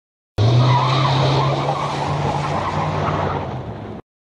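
Tyre-screech sound effect: car tyres squealing with a steady low hum underneath, starting suddenly, fading a little and then cutting off abruptly.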